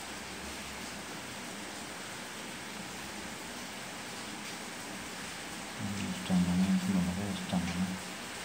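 Steady background hiss, then about six seconds in a man's low voice humming or murmuring for about two seconds.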